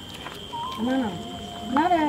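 A person's voice, drawn out and wavering in pitch, starting about half a second in and loudest near the end. A steady thin high-pitched tone runs under it.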